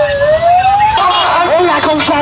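A siren wailing, its pitch sliding down and then back up, breaks off about a second in; people's voices shouting follow.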